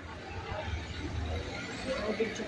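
A low, steady vehicle engine rumble amid street traffic noise, with faint voices in the background.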